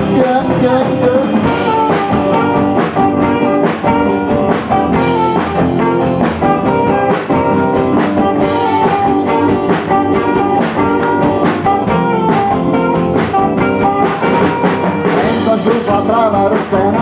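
Live rock band playing an instrumental passage with no vocals: saxophone, electric guitars, bass guitar and a steady beat on the drum kit.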